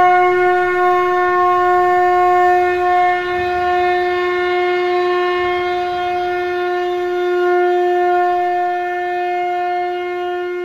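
Conch shell (shankh) blown in one long, steady note that holds a single pitch throughout, swelling slightly in loudness.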